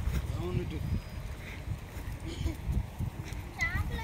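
Brief, faint snatches of voices over a low, uneven rumble, with a clearer voice rising just before the end.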